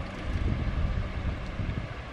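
Low, uneven rumble of handling noise on a handheld camera's built-in microphone as the camera is shifted in the hand.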